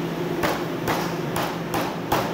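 A meat cleaver chops a duck on a thick wooden chopping block. There are about five sharp chops, roughly half a second apart, with the last ones coming quicker, over a steady low hum.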